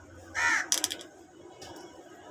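A single short, harsh bird call about half a second in, followed straight away by a quick run of four or five sharp clicks.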